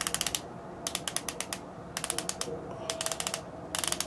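Twist-up highlighter pen (MAC Prep + Prime Highlighter) being wound: short runs of rapid ratchet clicks about once a second as the base is turned. This is the pen being primed, many turns needed to push the product up to the brush tip.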